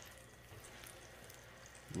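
Faint crackling and sizzling of hot pan juices around a freshly roasted turkey breast in a glass baking dish.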